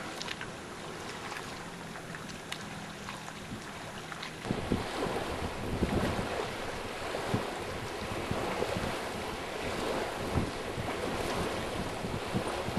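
Wind buffeting the microphone over surf noise, rising abruptly about four and a half seconds in, with gusty swells after that. Before the rise it is quieter, with a faint low hum.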